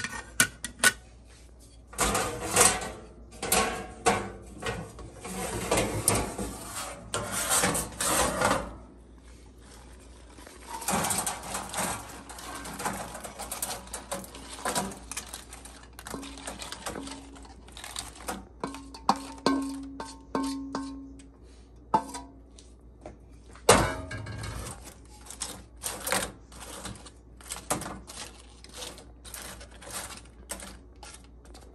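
A slotted spatula scraping and knocking in a wok as crisp fried banana chips are scooped out, with the chips rattling as they go. The dry, brittle chips then click and clatter as they are tipped and turned in a wire mesh basket.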